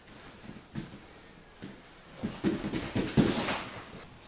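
Wrestling shoes stepping on a wrestling mat, then a flurry of scuffs and thuds as two wrestlers lock up in a front headlock, loudest about three seconds in.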